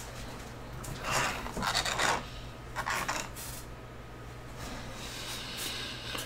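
A trading card being handled: a few soft rubbing, scraping sounds of card against fingers, about a second in, just before two seconds and around three seconds, over a low steady hum.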